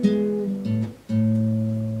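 Classical acoustic guitar playing the closing notes of a lullaby: a couple of plucked notes, a brief break about a second in, then a final low chord left ringing and slowly fading.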